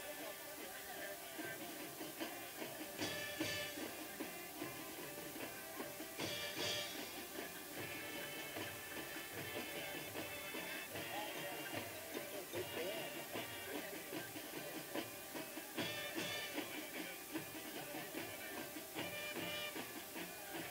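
High school marching band playing on the field: held chords from the wind instruments over drum strokes.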